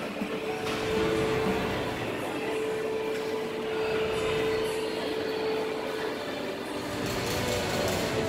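Mall carousel turning: a steady rumbling drone with a single held tone that stops about six seconds in.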